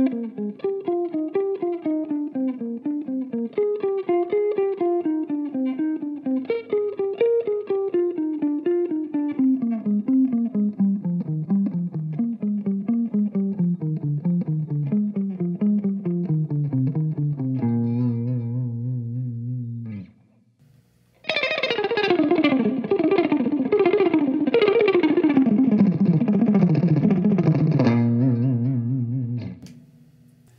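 Electric guitar playing a fast picked minor-scale exercise in sextuplets, six-note groups that work their way down in pitch, ending on a held low note about 18 seconds in. After a short pause the run is played again, louder, ending on a held low note near the end.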